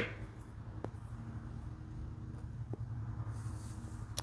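Quiet background with a steady low hum, a faint click about a second in and a soft hiss near the end.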